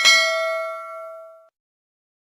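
A single bell-like ding, struck once and ringing down, then cutting off abruptly about one and a half seconds in.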